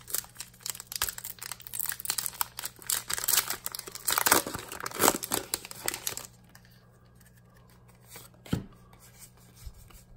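Foil booster pack wrapper of a Pokémon Hidden Fates pack being torn open and crinkled by hand, a dense crackle for about six seconds, then it goes much quieter as the cards come out, with one sharp click near the end.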